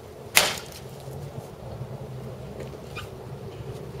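A single sharp chop of a Cold Steel two-handed machete into a log round, about a third of a second in, splitting the round in one blow.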